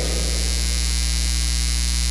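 Steady electrical mains hum with a faint hiss, from the microphone and sound system, holding at one level with no other sound.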